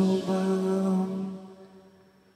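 A man's singing voice holding one long note that fades away, the last sung note of a phrase, with little else heard behind it.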